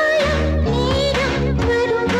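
A 1980s Tamil film song: a high female voice sings a gliding melody line over a stepping bass line and band accompaniment.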